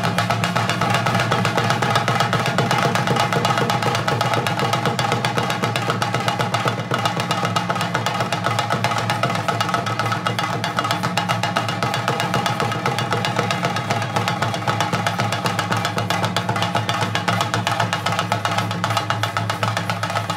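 Chenda drums beaten rapidly with sticks in a dense, unbroken roll, with steady held tones running beneath: the drumming that accompanies a theyyam performance.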